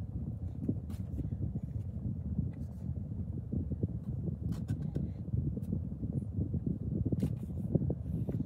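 Low, steady rumble of a car heard from inside the cabin, with a few faint clicks.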